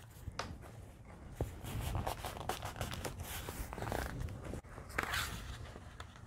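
Faint rustling and light taps of paper handled by hand as a freshly glued, folded paper flap is pressed flat onto a journal page, then lifted open near the end.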